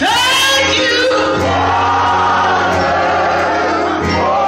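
Live gospel singing: a woman soloist sings through a microphone with a choir and steady low accompaniment behind her. A loud sung note slides upward right at the start, and from about a second and a half in a long held line wavers in pitch.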